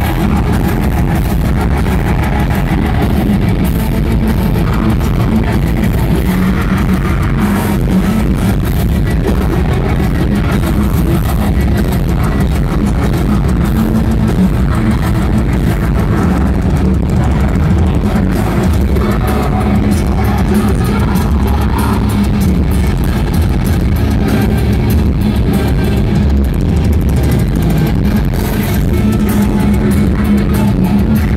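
Heavy metal band playing live at full volume: distorted guitars, bass guitar and drums, with the bass and drums strongest.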